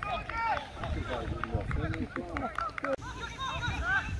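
Several voices calling and talking across an amateur football pitch during play, with a laugh near the end.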